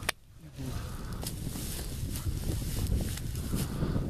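A sharp snip of hand pruning shears cutting a sweet cherry branch at the very start, then steady wind rumble on the microphone with a few faint clicks and rustles among the branches.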